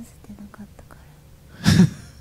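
Soft, whispered Japanese woman's voice from an ASMR recording, faint and broken. About one and a half seconds in comes one short loud puff of breath: a man's snort of laughter close to the microphone.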